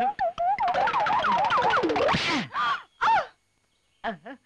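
High, quavering, goat-like bleating cries that rise and fall quickly, thickest through the middle, ending in two short falling cries.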